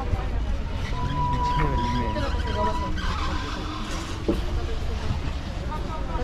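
Outdoor ambience: wind rumbling on the microphone under people talking. A steady high tone starts about a second in and lasts about two seconds.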